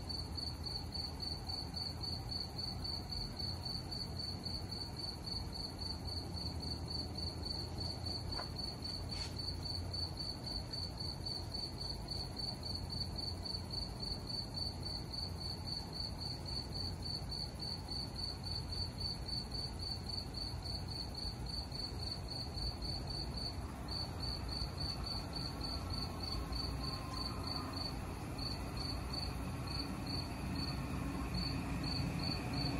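Crickets chirping in a steady, rapid, evenly spaced pulse, high-pitched, over a low steady rumble.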